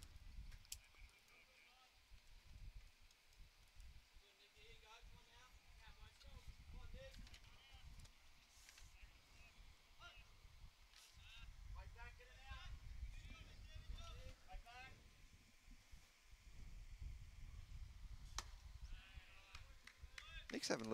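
Near silence on a baseball field, with faint distant voices of players and spectators calling out now and then over a low rumble.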